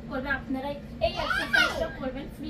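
Young children's voices, rising to a loud, high-pitched child's vocalization in the second half.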